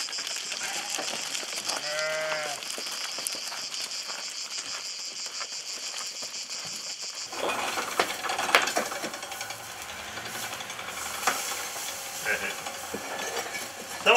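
A single short bleat from a sheep or goat about two seconds in, over a steady high hiss. About seven seconds in, the sound gives way to embers crackling and popping, with scattered sharp clicks, under a lamb roasting on a spit.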